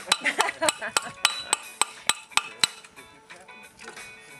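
Rapid hammer blows on a conch shell, about four a sharp, ringing knock each second, stopping a little past halfway: the shell is being broken open to get the conch out.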